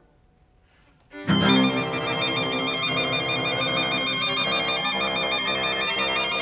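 About a second of near silence, then electronic background music comes in: a sustained low chord under a fast, repeating two-note warble in the high register, like a phone ringtone.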